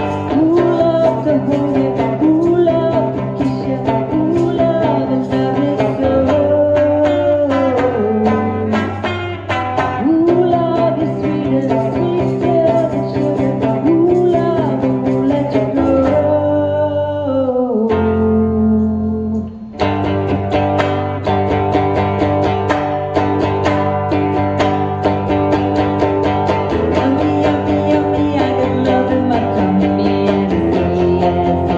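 Live song: a woman's singing voice over an amplified electric guitar accompaniment. About two-thirds of the way through, the music thins briefly to one held low note before the full song comes back.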